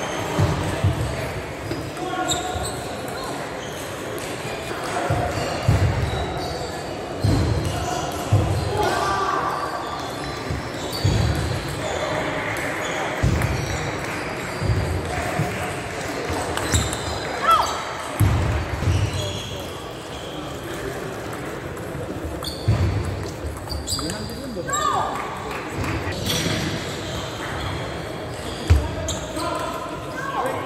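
Table tennis rallies in a large, echoing sports hall: the ball clicking off bats and table, with thuds of players' footwork on the wooden floor every second or two, over a background murmur of voices.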